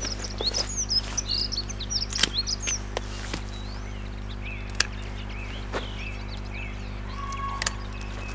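Small birds chirping in quick twittering calls, busiest in the first three seconds and fainter after, with scattered sharp clicks of pruning secateurs snipping redcurrant stems. A steady low hum runs underneath.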